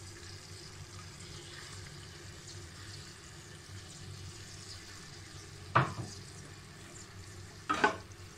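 Sliced onions sizzling in hot oil in an aluminium pot, a steady frying hiss. Two sharp knocks near the end, about two seconds apart.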